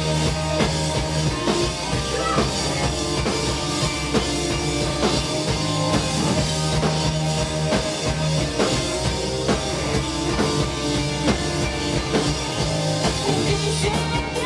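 Live rock band playing at full volume: a drum kit drives a steady beat under electric guitars and bass guitar.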